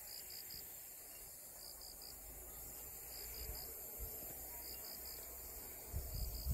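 Faint crickets chirping outdoors: short high trills in groups of three, repeating about every second and a half, over a steady high hiss.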